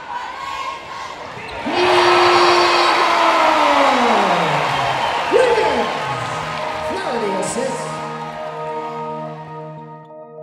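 Basketball game sound from a gym crowd, which at about two seconds in swells loudly and slides down in pitch as if slowing to a stop. It gives way to a steady droning music chord held through the end.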